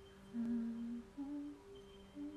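A woman humming softly with closed lips: one held note, then a second slightly higher note, over a faint steady background hum.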